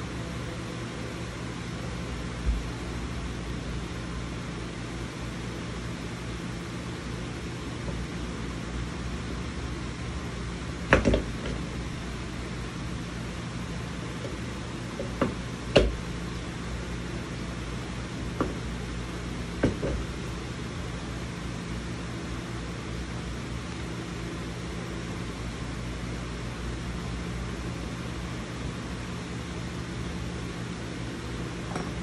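Steady low room hum, like a running fan, with a handful of sharp clicks and knocks as gaming-chair parts are handled during assembly. The loudest knocks come about eleven seconds in and again near sixteen seconds, with smaller ones around them.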